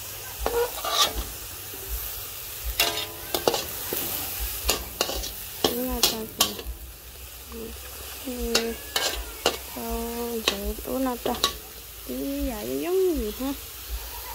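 A metal spatula scraping and clacking against a metal wok while minced meat sizzles as it is stir-fried. At times a wavering pitched tone sounds in the background.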